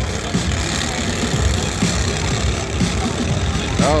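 Several riding lawn tractor engines running at once, a dense, uneven mechanical din with crowd voices mixed in.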